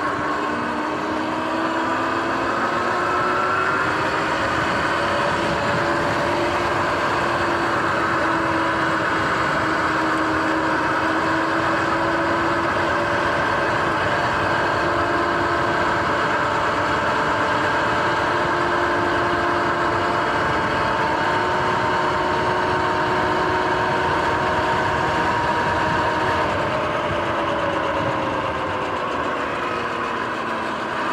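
Sur-Ron X electric dirt bike's motor and drivetrain whining while riding, several steady tones that drift gently up and down in pitch with speed, over a continuous rush of wind and tyre noise.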